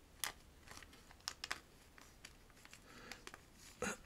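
Soft plastic penny sleeve crinkling faintly as a baseball card is pushed into it, with a few scattered light clicks and rustles.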